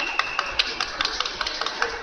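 A steady high signal tone from the officials' table or referee stops about half a second in. It is followed by a run of sharp, uneven hand claps from spectators, several a second, as the fighters are separated at a stop in the bout.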